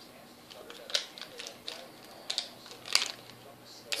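Handling noise of plastic wrestling action figures in a toy wrestling ring: faint rustling with a few sharp clicks, one about a second in and a louder one near three seconds.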